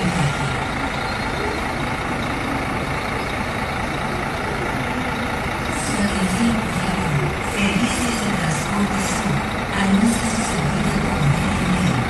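A parked coach bus's diesel engine idling: a steady rumble. From about halfway through, people's voices are heard talking indistinctly over it.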